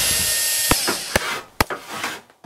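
Sound effects of a channel intro: a loud noisy whir that stops under a second in, then three sharp hits about half a second apart, fading away.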